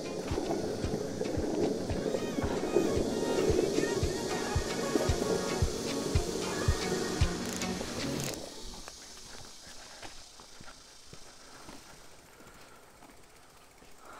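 Skateboard wheels rolling over rough asphalt, a steady gritty rumble that dies away about eight seconds in as the board stops.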